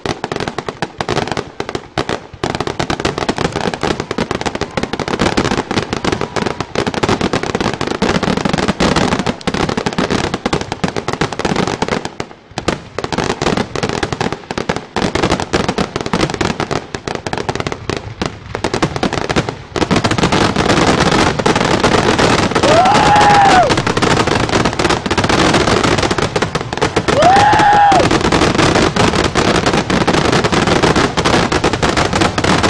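Aerial fireworks display: a continuous barrage of bangs and crackling that grows denser and louder about two-thirds of the way through. Two brief tones rise and fall in the louder part.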